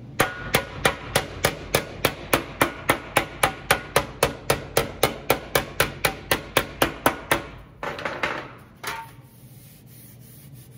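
A bumping body hammer with a white head tapping a 20-gauge sheet-metal fender panel laid over a leather beater bag: a steady run of light blows, about three or four a second, knocking dents and low spots out to smooth the panel. The hammering stops about seven seconds in and is followed by a brief rubbing sound and one last knock.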